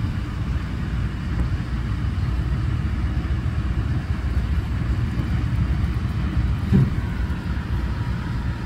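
Steady low rumble of street traffic and idling vehicle engines, with one brief louder sound about seven seconds in.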